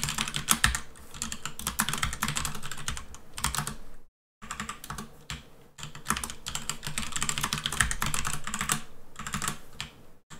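Fast typing on a computer keyboard: dense runs of sharp key clicks, broken by short pauses, one of them a brief silence about four seconds in.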